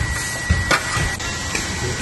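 Metal scraper scratching and clicking against the rusted-through steel sill of a BMW E36, working at loose rust around the holes, with a few sharp clicks near the start and about half a second in. A thin steady high tone sits behind it and stops about a second in.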